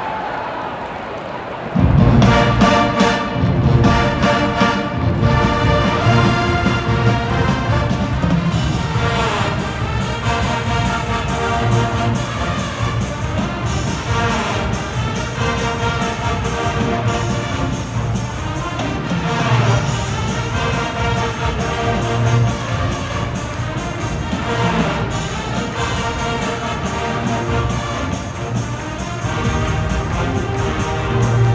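Large marching band of massed brass, sousaphones and drums striking up a polka, the Wisconsin state dance, with a sudden loud entry about two seconds in and then playing on at full volume.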